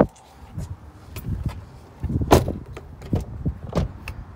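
Knocks and clicks of a 2002 Lexus RX300's door and body as someone climbs out of the driver's seat, with low handling rumble and one louder thump a little past halfway.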